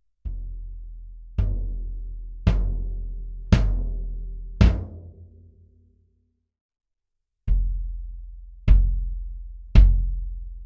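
Acoustic bass drum played with the kick pedal, five single strokes about a second apart, left wide open with no muffling so each deep boom rings on. After about two seconds of silence, the same drum with a felt strip muffling the head is struck three more times.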